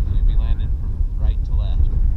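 Wind buffeting the camera's microphone as a loud, steady low rumble, with a voice speaking briefly twice over it.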